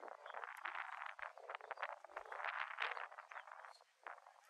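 Faint, busy chatter of animal calls in irregular clusters of short, scratchy notes.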